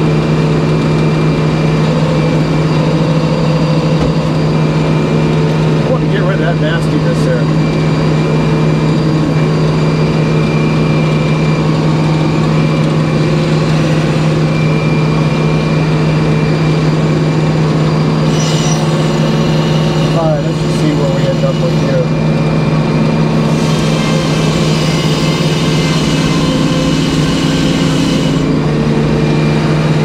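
Circular sawmill's engine running at a steady, loud drone, driving the large circular saw blade. A hissier sound joins for a stretch in the second half, then drops away near the end.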